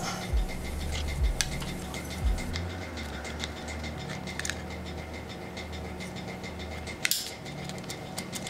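Small scattered clicks and ticks of a plastic flip-key fob shell and its parts being handled and fitted together, over a low steady hum.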